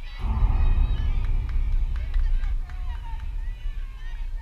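High-pitched girls' voices calling and cheering with a few sharp claps, over a loud low rumble on the microphone that starts a moment in.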